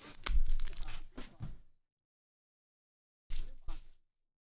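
Foil trading-card pack wrappers crinkling as the packs are handled and moved: a crackly burst in the first second and a half, then two short crinkles near the end.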